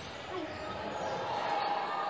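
Live basketball game sound in a reverberant gym: the ball bouncing on the hardwood court and players moving, with faint voices in the hall.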